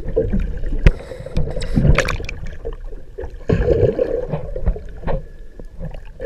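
Water churning and bubbling against an underwater camera in irregular surges, with a few sharp knocks on the camera body, one about a second in and another about two seconds in.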